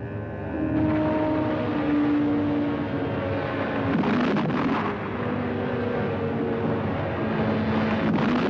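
Trailer soundtrack: sustained orchestral chords over a heavy, steady rumble, with a louder rushing surge of noise about four seconds in.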